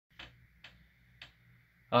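Three faint, sharp clicks at uneven intervals over a low steady hum, then a man starts speaking right at the end.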